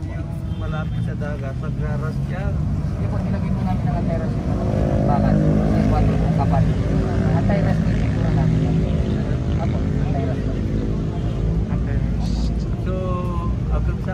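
A motor vehicle's engine running close by, its hum swelling through the middle few seconds, over a steady low rumble and people talking.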